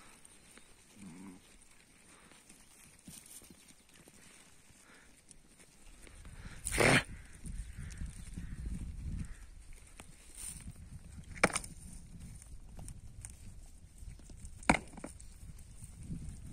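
Flock of sheep grazing, with two sharp cracks about three seconds apart in the second half. A brief rush of noise comes near the middle, followed by a low rumble.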